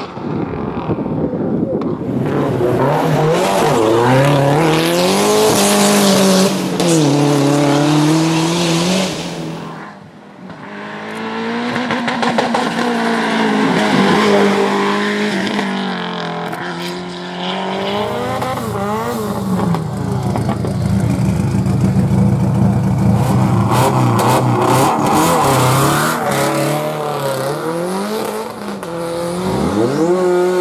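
Fiat Coupe Turbo's engine revving hard through a slalom, its pitch climbing and falling again and again as the car accelerates, lifts off and changes gear. About ten seconds in the sound fades briefly, then comes back loud.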